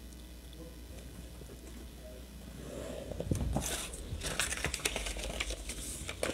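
Stiff cardstock paper being handled, rustling and crackling with small ticks, starting about halfway through after a quiet start.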